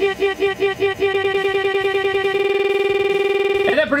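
A man's spoken syllable "jack" looped as an editing stutter effect, repeating about seven times a second, then faster, until it blurs into a steady electronic buzzing tone that cuts off suddenly just before the end, where normal speech resumes.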